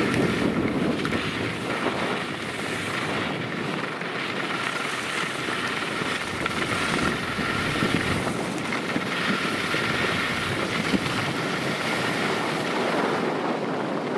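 Steady rushing noise of wind on the microphone mixed with ski edges scraping over hard-packed snow as a slalom skier turns through the gates. From about a third of the way in, a faint steady high tone sits underneath.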